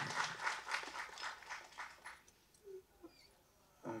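Hand clapping from a small audience, a quick run of claps that thins out and stops after about two seconds, leaving near quiet.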